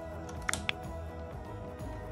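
Background music with two sharp switch clicks about half a second in, as the lighting circuit is switched on at the circuit breaker and wall switch.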